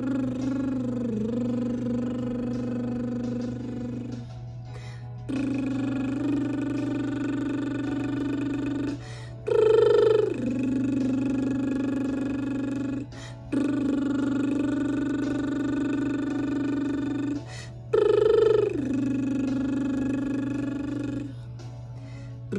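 A woman's vocal warm-up: she holds one long steady note after another with her lips closed, each about four seconds, with a short breath between. Twice, about halfway and again near the end, a note starts higher and drops to the same held pitch. A faint steady low hum runs underneath.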